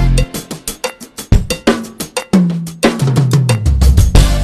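Acoustic drum kit played in a fast fill: rapid, sharp snare and tom strokes with cymbal splashes, then a run down the toms with each drum lower in pitch, and bass drum hits near the end.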